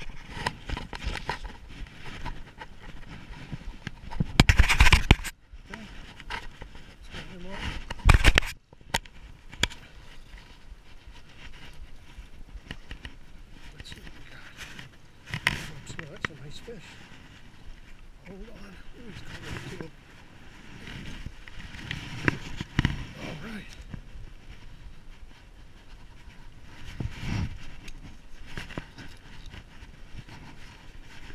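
Rustling and handling noise on the microphone as a caught fish is brought up and handled, with two loud bursts about four and eight seconds in, then smaller bumps.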